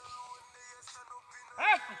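A man's drawn-out, sing-song call to a team of plough oxen near the end, its pitch rising then falling, over faint sustained musical tones.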